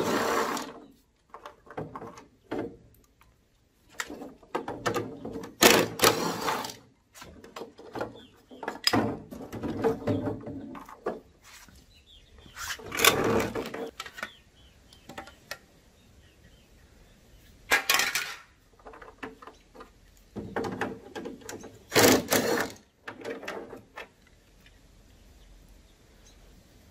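Craftsman cordless driver running in repeated short bursts, each half a second to a second and a half long, as it backs screws out of a plastic mower hood.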